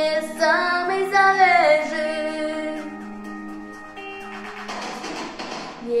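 A girl's pop vocal ends a line with a held note that bends down, over an instrumental backing. The backing then carries on alone with sustained chords, and a hissing swell builds near the end, leading into the next sung line.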